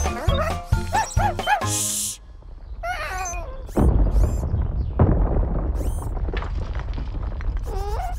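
Cartoon background music, then from about four seconds in a deep, rumbling sound effect of something digging down through the earth, with a second surge about a second later.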